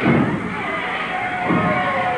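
Two dull thuds from the wrestlers in the ring, one at the start and another about a second and a half later, with audience members shouting in the background.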